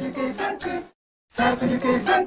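A short logo jingle altered with audio effects: two brief phrases of stepped, pitched notes with a half-second break between them.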